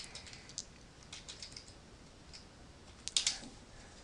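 Computer keyboard being typed on: scattered light key clicks, with a louder cluster of keystrokes a little after three seconds in.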